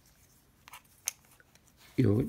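Handling noise from a plastic pipe section with a magnet on a rod being fitted into a rubber holder: a few faint clicks, then one sharp click about a second in.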